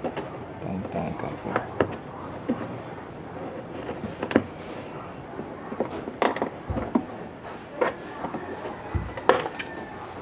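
Scattered sharp clicks and light knocks of a flat screwdriver and fingers working at a plastic clip on a car's wheel-arch liner, prying the fastener loose. The loudest clicks come about four seconds in and near the end, with a couple of dull thumps between.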